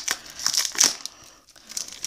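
Trading cards and a foil pack wrapper being handled, with a few short crinkling, rustling bursts in the first second that then die down.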